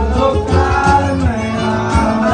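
A man singing into a handheld microphone over guitar-led music with a strong bass line.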